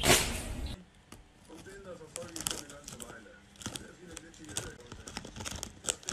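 Under a second of loud noise, then a foil crisp packet crinkling in short, irregular crackles as a cat noses and paws into it, with a quiet voice underneath.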